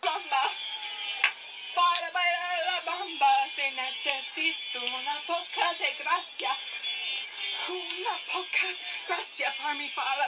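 A girl singing along to a pop song, played back through a phone's small speaker with no bass.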